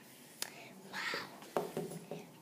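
A soft, breathy, whispered "uau" from a woman's voice, with two light taps as a plastic toy dog is stood on the table, one about half a second in and one near the end.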